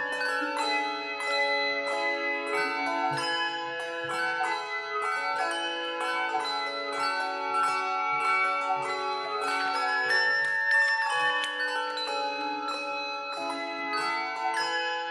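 Handbell choir playing a piece: many handbells struck in a steady run of notes, each ringing on and overlapping the next.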